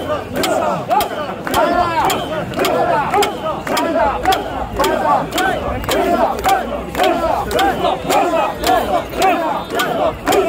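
Crowd of mikoshi bearers chanting in rhythm as they shoulder and jostle the portable shrine. A steady beat of sharp clicks, about two to three a second, runs in time with the chant.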